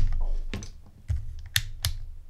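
A thump as a Fluke digital multimeter is set down, then a few sharp clicks about half a second apart as its rotary selector dial is turned to switch the meter on.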